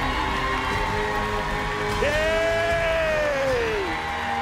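Game-show music bed playing under a host's long, drawn-out announcing call, which starts about halfway through, holds its pitch and slides down at the end.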